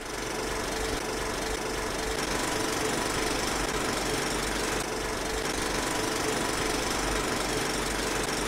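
Film projector running: a steady mechanical clatter with a faint constant whine.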